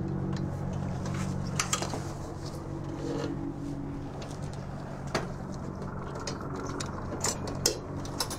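Metal clicks and clanks of a ramp-mounted machine gun being unpinned and swung on its mount, a few sharp knocks spread through, over a steady low hum of aircraft machinery.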